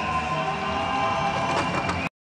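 Indoor swimming arena ambience during swimmer introductions: music playing over the loudspeakers with the hall's crowd noise and echo.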